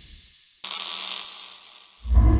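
Sound effects for a logo animation: a fading low rumble dies almost to silence, then about half a second in a sudden hissing burst with a steady low hum sets in and fades away over about a second.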